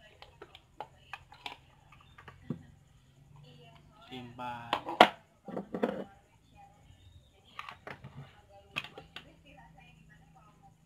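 Scattered plastic clicks and knocks from handling a motorcycle speedometer cluster and pulling its clear lens cover off. The loudest click comes about halfway, and a voice sounds briefly around the middle.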